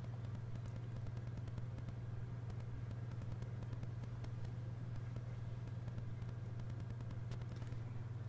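A steady low hum with faint background hiss, unchanging throughout; no distinct event stands out.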